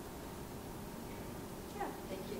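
Quiet lecture-room tone, with a short voice-like sound falling in pitch near the end.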